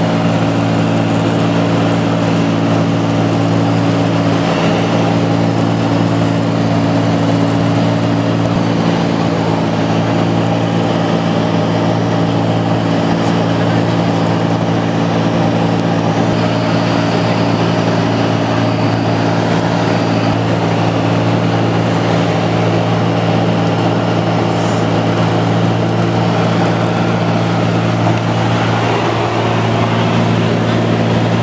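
Steady drone of a light aircraft's engine and propeller heard from inside the cabin in flight: a loud, even low hum with a higher rushing noise above it, unchanging throughout.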